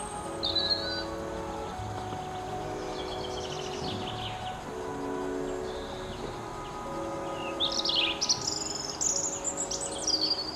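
Birds singing in short, quick chirping phrases, loudest near the end, over soft background music of slow held chords.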